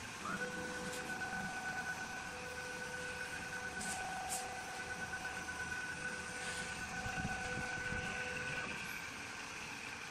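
Automatic wood-turning lathe running: a steady high motor whine comes up quickly just after the start and holds level until it fades near the end, over the rougher low noise of the machine turning a wooden spindle.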